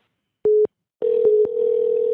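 Telephone ringback tone over a phone line as the call is forwarded: a short beep, then about a second in a steady tone starts and holds, with a couple of faint clicks, meaning the forwarded number is being rung.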